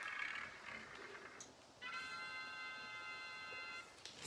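A steady electronic tone, like a chord, held for about two seconds from roughly halfway in; it is the sound effect of a tablet's random-number app drawing a number. A soft hiss comes before it.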